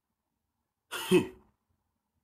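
A man clearing his throat once, a short rasp about a second in.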